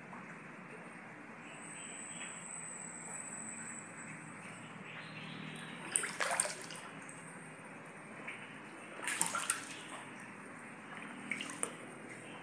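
Floodwater running with a steady rush, broken by three short louder bursts of water noise about six, nine and eleven seconds in.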